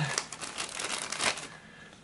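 Crinkling and rustling of plastic packaging being handled, with a few light clicks; it dies away about a second and a half in.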